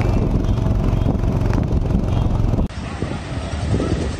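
Motorcycle engines running steadily in a low rumble, with voices mixed in. After nearly three seconds the sound cuts suddenly to a quieter mix of motorbikes moving slowly and people's voices.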